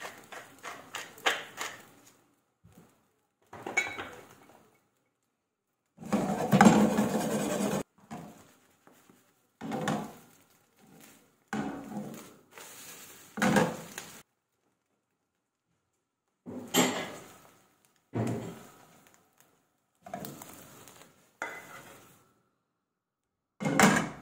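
A hand pepper mill grinding in quick clicks for about the first two seconds, then a run of short, separate bursts of clatter from a non-stick frying pan being handled and tossed on a gas hob, broken by silences.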